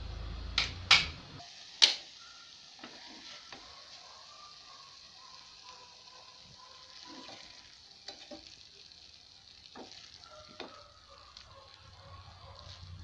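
Clay cooking pot and lid clinking sharply three times in the first two seconds, over a low rumble that stops soon after. Then a spoon taps and scrapes against a ceramic plate as the banana blossom mixture is spooned into the hot pot, with faint sizzling.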